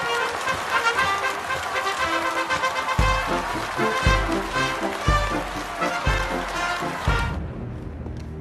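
A brass band playing over a noisy crowd. From about three seconds in, a bass drum beats about once a second. The sound drops off abruptly near the end.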